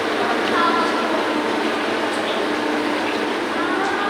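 Indistinct background chatter, with a few faint voice fragments about half a second to a second in, over a steady hum of room noise.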